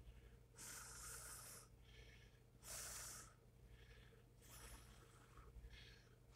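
Near silence, with a few faint, short breaths spread through it.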